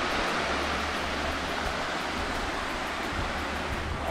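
Mountain burn cascading down bare rock slabs: a steady rushing of falling water.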